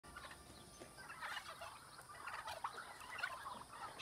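Domestic turkeys calling faintly: a scattered run of short, soft calls.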